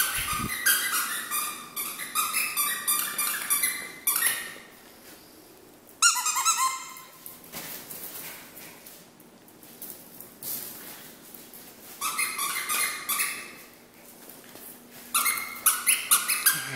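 A squeaky dog toy squeaking rapidly over and over as a Chihuahua puppy chews on it. The squeaks come in bursts, with a lull of a few seconds in the middle.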